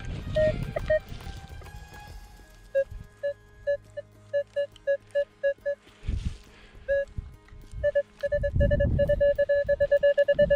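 Metal detector beeping as its coil is held over a freshly dug hole: short mid-pitched beeps, first spaced out, then a fast run of them in the last couple of seconds. It is signalling a metal target deep in the soil. A few dull thumps of digging come in between.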